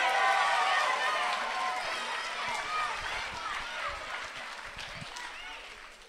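An audience's many overlapping voices, cheers and chatter for a graduate called to the stage, fading steadily away over several seconds.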